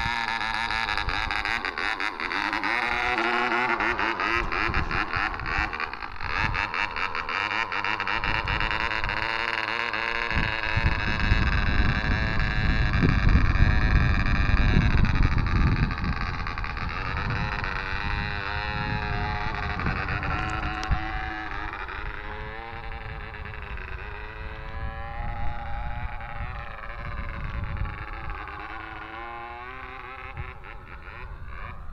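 Small model-airplane engine running at full speed with a high buzzing note, held in hand and then launched. Once the model is airborne its pitch wavers up and down and it grows fainter as it climbs away.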